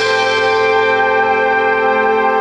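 Pit orchestra music from a stage musical, holding one sustained chord with a ringing, bell-like tone.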